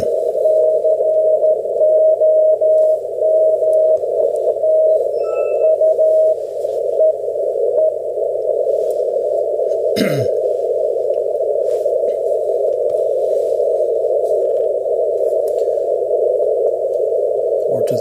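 Weak Morse (CW) beacon from HP1AVS heard through an ICOM IC-7300 with a 450 Hz filter: a keyed tone of about 600 Hz sends dots and dashes just above a steady band of receiver hiss. About eight seconds in the tone fades out and only the hiss is left.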